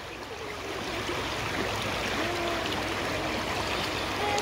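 Shallow river running over stones, a steady rushing of water heard close to the surface.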